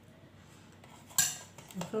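A metal spoon clinks once, sharply, against a dish about a second in, with a short ring after it.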